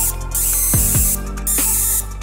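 Background electronic music with a beat: deep kick-drum hits and stretches of bright hiss.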